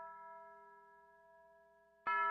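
A bell-like chime rings out after being struck and fades slowly to faint. Several steady overtones die away together, and a fresh strike comes right at the end.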